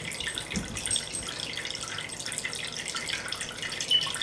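A thin stream of water pouring steadily from a small hole in a plastic bottle into a glass dish that already holds water, making a continuous light trickling splash.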